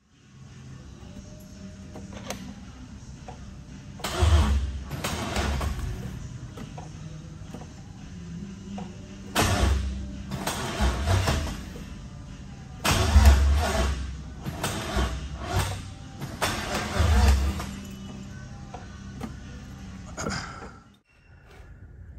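Gen 3 Ford Coyote V8 turned over by its starter in four bursts of one to two seconds without catching, over background music. This is a crank-no-start that the owner traced to a forgotten ground wire to the control pack, with a battery he doubts has enough cranking power.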